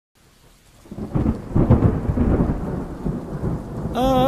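Thunder rumbling and crackling over falling rain, rising out of silence about a second in and loudest around a second and a half in.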